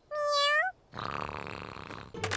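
Cartoon kitten giving a short, high mew that rises at its end, then purring steadily as it nuzzles in, content.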